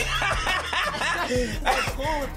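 People laughing and snickering over hip hop music playing back through studio speakers with a steady bass line.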